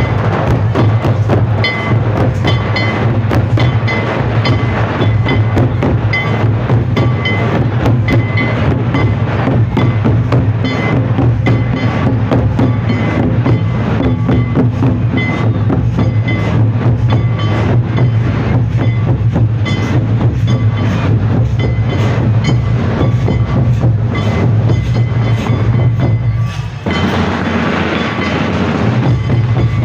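Santal folk dance music: loud, fast hand-drumming with a dense run of sharp rhythmic strikes over a heavy low drum beat, played for a lagre line dance. The sound changes abruptly near the end.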